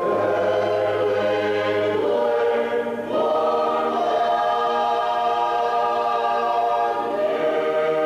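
Choral music on the soundtrack: voices singing long held chords that change slowly, with a new chord about two and three seconds in and another near the end.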